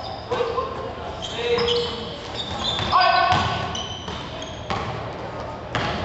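Basketball game sounds echoing in an indoor gym: a few separate thuds of the ball bouncing on the court and short high squeaks of sneakers on the floor, with players' voices calling out.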